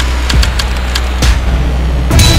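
Title-sequence sound design for an animated logo: a loud, deep rumble with scattered sharp whooshing hits, leading into theme music right at the end.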